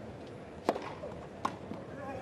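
Tennis racket strings striking the ball twice, about three-quarters of a second apart: a serve, then the return, over a quiet crowd.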